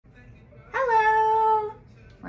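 A young child's voice: one drawn-out, high-pitched vocal sound held for about a second, starting shortly before the middle.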